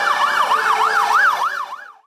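Fire engine sirens wailing in a fast yelp, the pitch sweeping up and down about two and a half times a second, with steady tones underneath. The sound fades out near the end.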